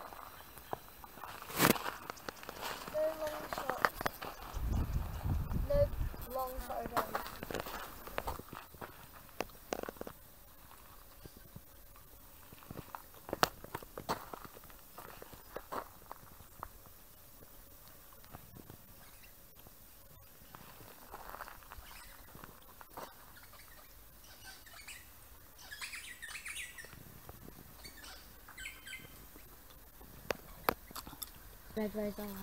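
Outdoor bush ambience. Scattered clicks and knocks and a brief low rumble in the first several seconds, then quieter, with a run of short, high bird chirps a few seconds before the end.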